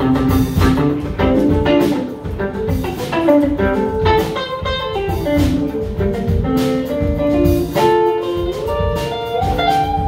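Live funk band playing an instrumental passage: electric guitar lines over electric bass and drum kit.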